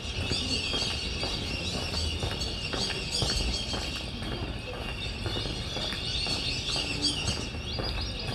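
Many birds chirping and calling together over a steady low rumble, with faint footsteps on a paved walkway.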